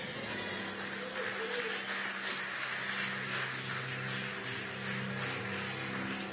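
A congregation applauds over soft instrumental music with long held low notes.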